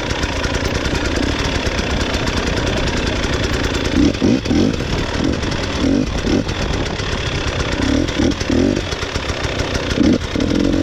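A 300 cc two-stroke enduro motorcycle being ridden, its engine running continuously with repeated surges of throttle, the strongest about four, six and eight seconds in.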